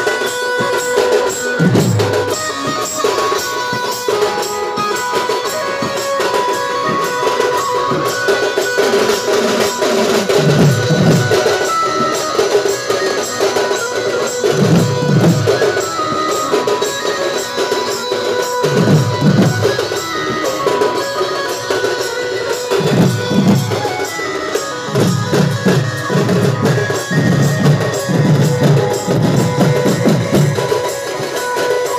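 Sambalpuri folk band music: large barrel drums (dhol) struck with sticks, with deep strokes coming in clusters, over a steady held melody line. The drumming grows dense for the last few seconds.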